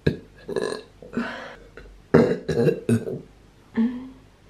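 A woman retching and burping from hangover nausea: several short, rough gagging heaves in a row.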